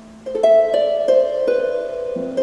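Celtic harp played solo: a low note rings and fades, then about a third of a second in a run of single plucked notes begins, each left ringing under the next.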